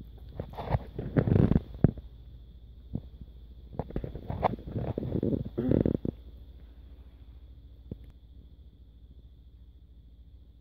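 Close rubbing and bumping noise on the phone's microphone, in two rough bursts of a second or two each, as feeding cats' fur brushes against it.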